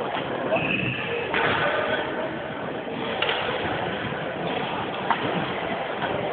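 Badminton rally: sharp racket strikes on the shuttlecock, three of them roughly two seconds apart, over a background of voices in the hall.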